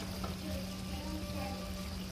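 Faint sizzle of a pot of fried pumpkin stew cooking on the stove, with a steady low hum under it.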